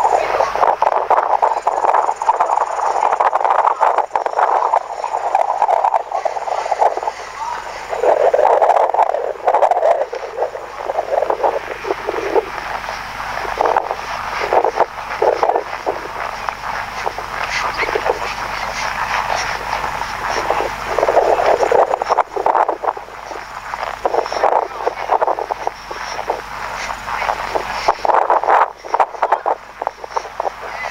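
Audio of a horseback ride played back through a phone's small speaker: a muffled, uneven rushing noise with irregular thuds, thin in the bass.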